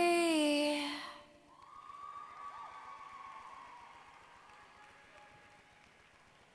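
A pop song's last held sung note, falling slightly, fades out about a second in. After it comes faint audience applause and cheering.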